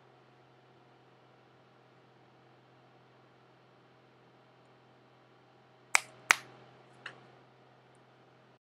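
Finger snaps after a long stretch of near silence with a faint low hum: two sharp snaps about a third of a second apart, then a fainter third about a second later.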